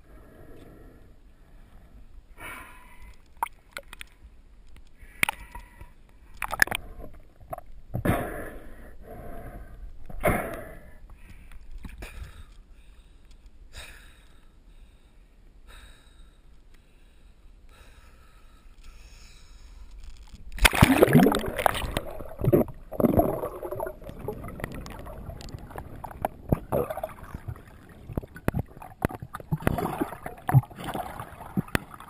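Water splashing and gurgling as a freediver swims with fins and snorkel, coming in irregular bursts, with a louder stretch of splashing about two-thirds of the way through.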